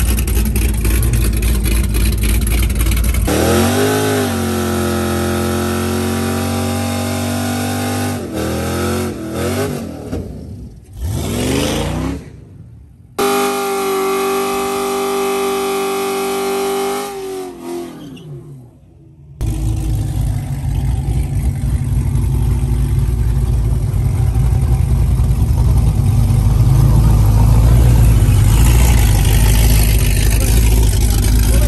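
Street-racing car engines rumbling at idle and being revved: an engine is twice held at a steady high pitch, then falls away before a heavy low rumble returns for the rest of the time.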